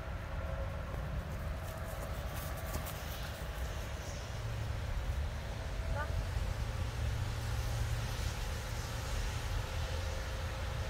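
A steady low outdoor rumble that grows a little louder about halfway through, with a faint short rising chirp about six seconds in.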